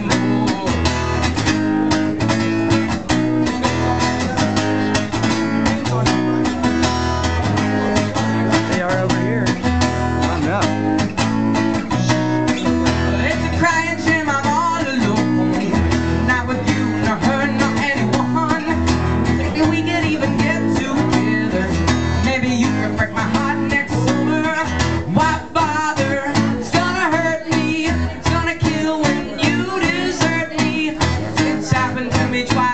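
Live acoustic guitar strummed through a PA, steady chords with the low notes changing every second or two. A young male voice sings over it, mostly in the second half.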